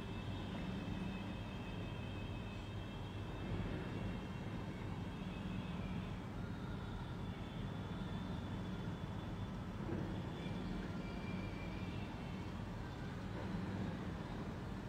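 Steady low background rumble, with faint wavering high tones drifting in and out above it.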